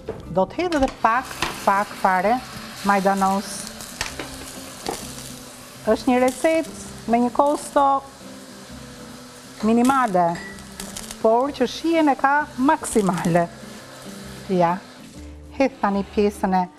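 Eggplant, tomato and pepper stew sizzling steadily in a nonstick frying pan while it is stirred with a spoon. Voices come in over it in short bursts again and again.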